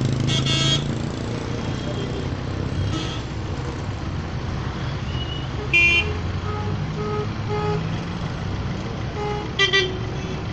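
Street traffic: engines running with a steady low hum while vehicle horns honk, with short toots about half a second in, a loud blast about six seconds in, and another toot near the end.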